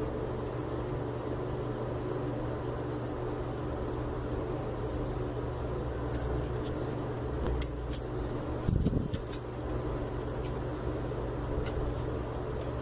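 A steady low hum, with a few faint clicks and taps of tweezers and thread against the metal of an overlock machine as its looper is threaded by hand.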